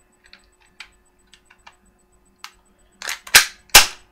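M945 airsoft BB pistol being handled with its slide fitted and worked, freshly oiled: light clicks, then a quick run of sharp snaps near the end, the last two the loudest.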